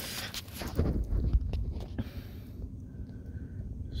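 Scuffling and shifting on gravel with handling noise on the handheld microphone: soft low thumps about a second in and a scatter of small clicks.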